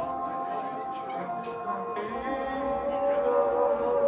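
Intro of a hip-hop backing track played by the DJ through the bar's PA, a melody of long held notes with no rapping over it yet.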